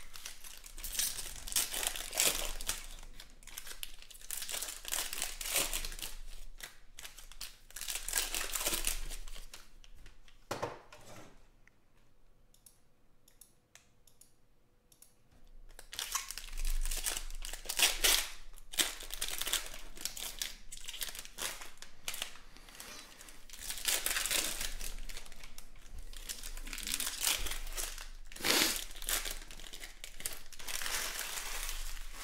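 Foil trading-card pack wrappers being torn open and crinkled by hand, in repeated bursts of crackling, with a quieter pause about halfway through.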